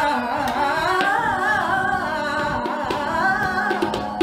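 A woman singing Indian classical-style vocal with gliding, ornamented melodic lines over a steady drone, with a few tabla strokes.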